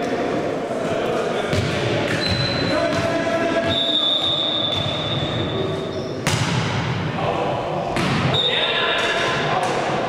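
Volleyball being struck during a rally, with sharp smacks about a second and a half in, about six seconds in and again about eight seconds in, echoing in a large gym. Players' voices call out throughout, and a high steady tone sounds in the middle of the rally and again near the end.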